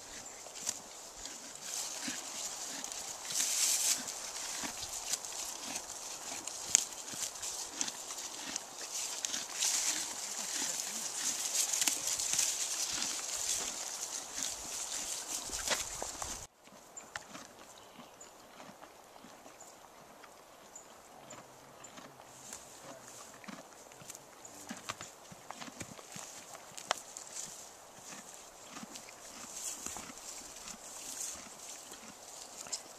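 A horse grazing close by, tearing and chewing grass and leaves in a steady run of crisp crunches, over a high hiss. About halfway through the sound drops abruptly to a quieter, sparser crunching.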